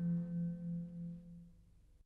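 The last held note of a tamburica band fading away, pulsing gently about four times a second, and dying out to silence at the very end.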